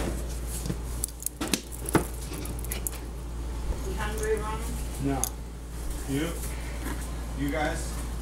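A few sharp clicks and knocks of things being handled on a kitchen counter in the first two seconds, followed by short bursts of quiet voice or laughter.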